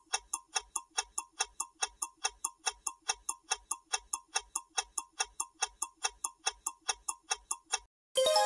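Ticking-clock sound effect of a quiz countdown timer: even, sharp ticks at about four a second, stopping just before the end.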